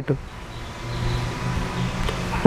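A low, steady engine-like hum over background noise, growing louder during the first second, like a motor vehicle running nearby.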